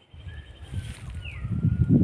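Birds calling with thin, drawn-out whistles, one gliding down in pitch about a second in, over a low rumble that grows loudest near the end.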